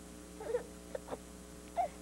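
A baby cooing and babbling: a few short, soft vocal sounds, about half a second in, around a second in, and again near the end.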